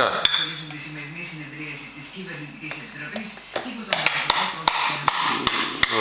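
Toddler's spoon and fork tapping and clinking against a plastic bowl and high-chair tray: a run of about eight sharp taps in the second half, over a low, wavering hummed voice.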